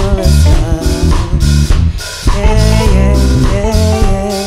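Live band playing an instrumental passage of a soul/R&B song: electric guitar and bass guitar over a drum kit.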